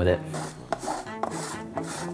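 A bar of chocolate being grated on a flat stainless-steel hand grater: a run of quick, repeated scraping strokes.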